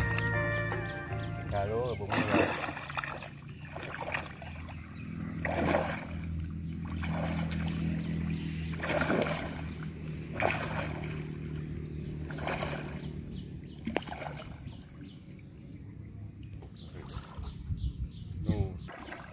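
Pond water splashing in short bursts, one every couple of seconds, as a gill net full of tangled fish is lifted and shaken in the shallows. A low steady hum runs underneath.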